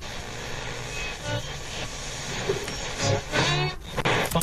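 Old-radio tuning sound effect played back from a beat: static hiss with brief whistling tones as if a dial were being swept, getting louder near the end with a wavering whistle.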